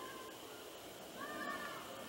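A faint animal call, slightly rising in pitch, about a second in, with a shorter faint call at the very start, over quiet outdoor background hiss.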